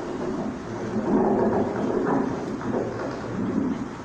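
Microphone handling noise: a headset microphone being rubbed and knocked as it is fitted on the wearer's head, giving an uneven muffled rumble and rustling with a few bumps, loudest from about a second in.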